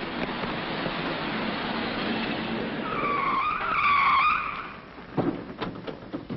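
A truck's tyres screeching as it brakes hard in an emergency stop: a wavering squeal of about a second and a half over the steady rumble of the truck running. A few short knocks follow near the end.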